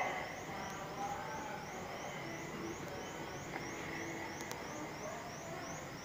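Store ambience inside a large hardware store: a steady hum of background noise with faint distant voices.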